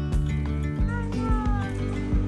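Background music with held tones and a steady low beat. About a second in, a short high cry falls in pitch over it.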